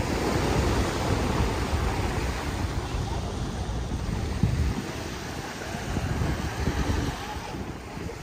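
Small waves washing onto a sandy beach, a steady rushing hiss, with wind buffeting the microphone in uneven low gusts.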